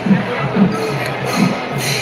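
Traditional Kerala temple percussion ensemble of drums and cymbals playing over a crowd, with loud drum strokes about twice a second and cymbal crashes.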